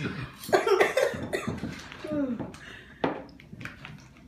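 Coughing in several short bursts, mixed with brief voiced exclamations.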